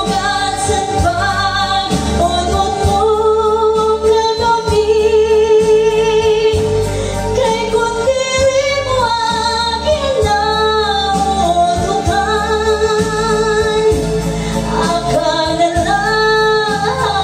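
A woman singing a Waray-language song into a handheld microphone, holding long notes with vibrato, over a recorded backing track with a steady bass beat.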